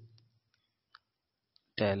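A pause in a man's speech: near silence with a couple of faint, brief clicks. The voice fades out at the start and speaks again near the end.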